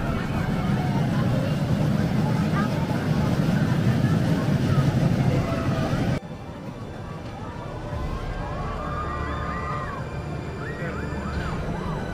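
Small roller coaster train rumbling along its steel track, with riders shouting over it. The sound cuts off abruptly about six seconds in, leaving a quieter outdoor background with voices calling.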